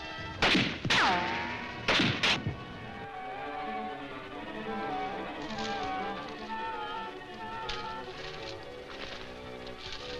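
Four gunshots or bullet strikes in the first two and a half seconds, the second followed by a falling ricochet whine, then background film music with sustained notes.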